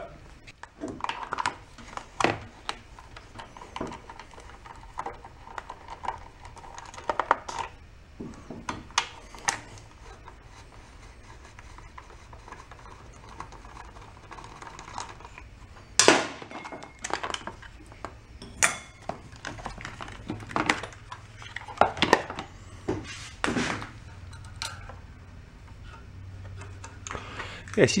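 A screwdriver and loose screws clicking and clattering against the plastic air cleaner housing and metal parts of a Briggs & Stratton engine as the screws are backed out and the housing is lifted off. The sharp clicks and knocks come at irregular intervals, and the loudest fall about halfway through.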